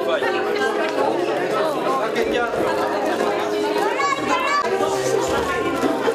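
Many children talking and calling out over one another, a continuous busy chatter of young voices.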